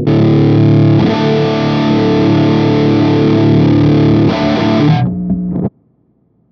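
Electric guitar played through the NUX MG-300 modeling processor's Muff fuzz pedal model: heavily distorted chords are struck and left to ring, with a new strike about a second in and a change near four seconds. The chord is cut off abruptly about five and a half seconds in.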